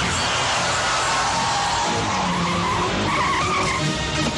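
Car tyres squealing as a car skids hard, the squeal wavering and rising in pitch in the second half, over background music.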